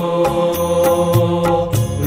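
Hindi devotional song: a singer holds a long sung "o" over steady instrumental backing.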